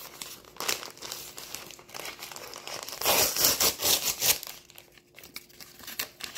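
Brown kraft-paper mailer crinkling and tearing as it is opened by hand, with a louder stretch of rustling a little past halfway.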